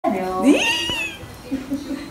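A high-pitched vocal call that slides up and then falls away over about a second, followed by quieter low-pitched speech.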